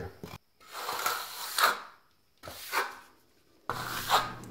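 Wooden screed stick scraping across damp sand-cement dry-pack mortar, cutting the mud down to level: two scraping strokes, broken by abrupt silent gaps.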